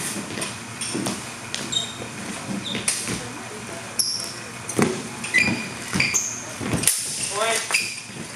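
Steel longswords clashing in sparring: a series of sharp clanks, several with short high metallic rings, mixed with thuds of footwork on a wooden floor. A voice shouts briefly near the end.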